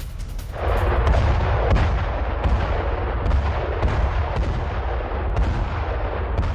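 Battle sound of explosions and gunfire: a deep, continuous rumble that begins about half a second in, with sharp cracks breaking through it every half second or so.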